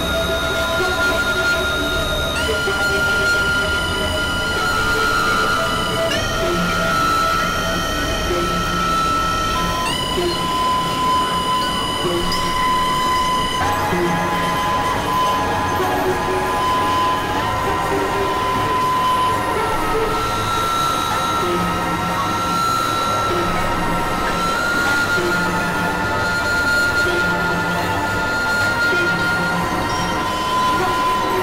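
Experimental electronic synthesizer drone music: several sustained tones held together, the chord stepping to new pitches every few seconds, over a pulsing low rumble.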